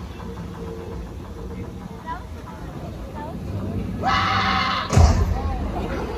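Stunt show over a low rumble and faint distant voices: a hissing rush starts about four seconds in, and a sharp, loud bang follows about a second later.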